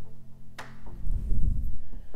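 Soft plucked-string background music, its notes ringing on; about a second in, a loud, low, muffled rumble takes over.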